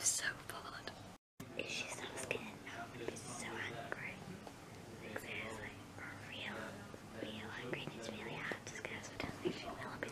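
Whispered speech, with a brief drop to silence just over a second in.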